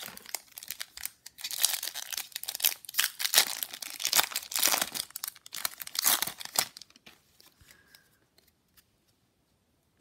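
A baseball card pack's wrapper being torn open and crinkled by hand: a dense run of crackling, tearing and rustling that stops about seven seconds in.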